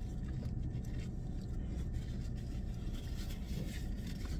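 Steady low rumble of an idling car heard inside its cabin, with faint rustles and ticks from a foil sandwich wrapper being handled while eating.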